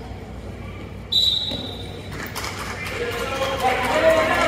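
A referee's whistle blows once, a short shrill steady note about a second in, the signal to start the wrestling from the referee's position. Spectators' voices and shouting then build up.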